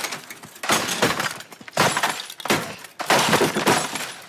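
A laptop being smashed with a hammer on pavement: about six hard blows, each with a crack and a clatter of breaking pieces.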